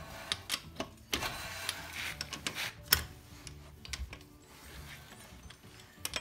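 Irregular metallic clicks and clinks of a socket and breaker bar working on a car wheel's lug nuts as they are tightened.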